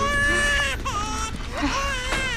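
Infant crying: one long wail, then several shorter, wavering cries.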